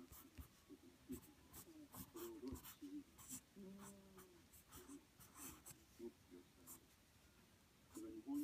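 Quiet, short scratchy rustles, a dozen or so scattered irregularly, over a faint, muffled voice in the background.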